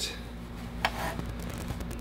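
Faint brushing of a fluffy duster over a plastic router case, with a small click just under a second in, over a steady low hum.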